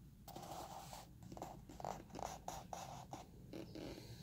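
Faint rustling and scraping of a book's matte paper pages being turned and pressed flat by hand, in a quick run of short strokes.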